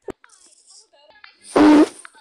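A faint click at the start and a few faint small sounds, then a short, loud vocal burst from a person about one and a half seconds in.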